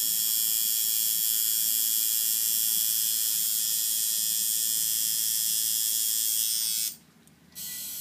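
Electric tattoo machine running against skin with a steady, high-pitched buzz. It cuts out about seven seconds in.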